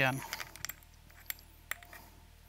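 A few sparse, light metallic clicks from the Stanley PB2500N battery tool's threaded back end being unscrewed and handled by hand.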